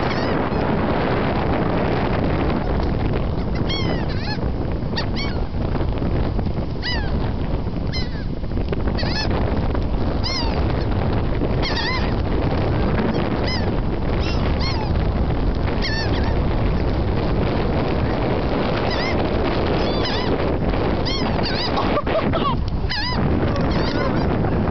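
A large flock of birds hovering close overhead, calling again and again with short, arched cries, over a steady low rushing noise.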